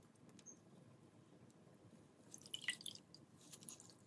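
Soaked floral foam squeezed by hand underwater in a basin, with faint wet squishing and dripping. A short burst of crackling clicks comes about two and a half seconds in.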